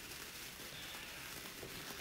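Faint steady fizz and crackle of two cake sparklers burning.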